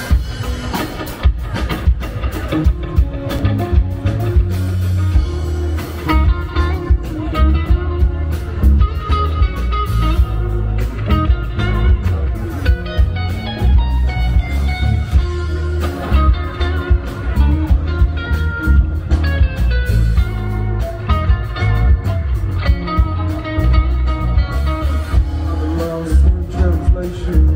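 Live band playing an instrumental passage on electric guitars, bass guitar and drums, with a heavy bass and a steady drum beat.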